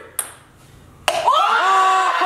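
A golf ball gives a single sharp click against a hard surface. About a second in, a group of people breaks into loud cheering and screaming.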